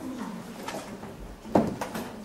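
A low, wavering hum-like tone under room noise, with a sharp knock about one and a half seconds in.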